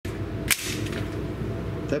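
A single sharp crack about half a second in, with a brief ringing tail, over a steady low hum.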